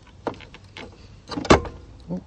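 A few short metallic clicks and knocks from the freshly unbolted camber plate and tools being handled at the strut top, with one sharp clunk about one and a half seconds in.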